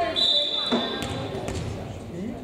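Referee's whistle blown once, a single steady high note lasting just under a second, signalling the server to serve. After it come a few light bounces of the volleyball on the hardwood gym floor, over spectators' chatter.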